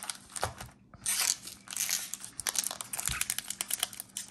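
Foil trading-card pack wrappers crinkling as they are handled by hand, then a pack being torn open, with a dense run of small crackles after a brief pause about a second in.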